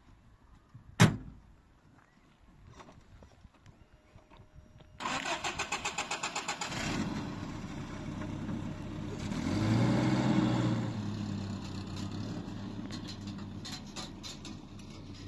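An old pickup truck's door slams shut about a second in. The starter cranks the engine in a quick, even chatter for under two seconds, and it catches and runs. It revs up briefly around the middle, then settles as the truck pulls away.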